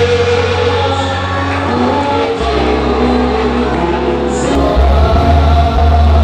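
Church congregation singing a gospel worship song together over amplified instrumental backing with sustained bass notes.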